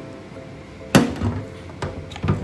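A ceramic bowl set down with a single sharp knock about a second in, followed by a couple of lighter clicks near the end, over faint steady background music.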